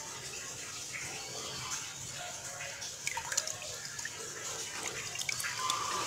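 Water splashing and dripping as fish are handled in a metal basin of water, with a few small splashes about three seconds in.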